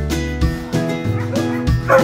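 Background music with a steady beat, with dogs barking and yipping over it; one louder bark comes near the end.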